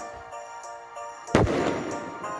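An aerial firework shell bursting with one sharp bang a little past halfway, its report dying away, over steady background music.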